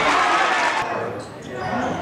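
Live basketball game sound in a gymnasium: spectators' voices and calls over the court noise, with a ball bouncing. The sound dips briefly about halfway through, then the voices pick up again.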